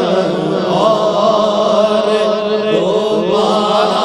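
Several male naat reciters chanting devotional verse together over microphones. A steady held tone lies beneath a moving, wavering melodic line.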